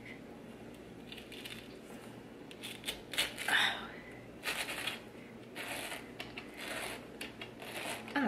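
A stainless steel pineapple corer being twisted down into a pineapple, its blade cutting through the fruit in four short bursts of cutting noise, starting about three seconds in with the first the loudest. It goes in more easily than expected.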